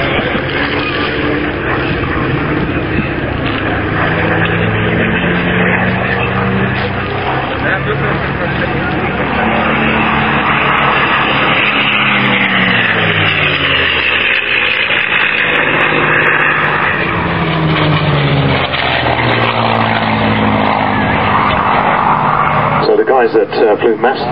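P-51D Mustang's Packard Merlin V-12 engine running at display power as the fighter flies past, its pitch dropping steeply about halfway through as it sweeps by close.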